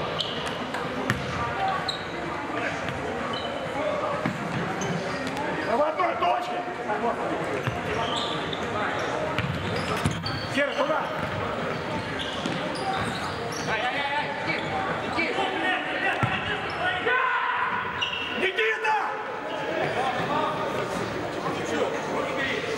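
Futsal ball being kicked and bouncing on a wooden sports-hall floor, a scatter of short knocks echoing around a large hall, with voices calling out now and then.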